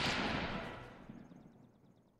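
Logo-animation sound effect: the tail of a noisy hit or whoosh, fading away within about a second and a half.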